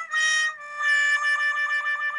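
Comic 'sad trombone' sound effect: a descending run of notes on a wind instrument, ending in a long, low, wavering note.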